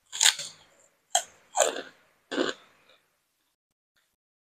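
Crunchy bites and chews of a crispy pink cracker, four sharp crunches in the first two and a half seconds, each dying away quickly.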